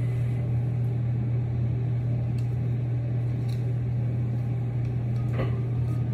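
A steady low hum, like a running fan or appliance, with a faint click near the end.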